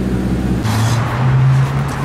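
Car engine running steadily. About two-thirds of a second in, the sound changes abruptly to a brief rushing noise and a different, steadier engine note.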